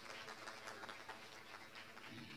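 Faint audience applause, a dense run of scattered claps that dies away near the end.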